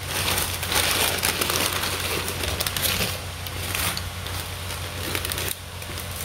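Paper burger wrapping crinkling and rustling as it is unfolded by hand, loudest over the first three seconds, then lighter rustles.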